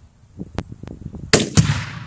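A rifle shot, then a second loud boom a quarter second later as the Tannerite target detonates downrange, the report ringing away across the field. A few small clicks come before the shot.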